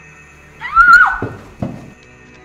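A loud, high-pitched cry that rises, holds briefly and drops away, followed by two short low thuds.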